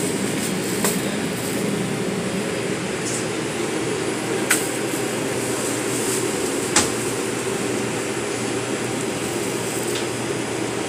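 Steady hum inside an R142 subway car held during a delay, with its ventilation running. Three short sharp clicks about one, four and a half, and seven seconds in.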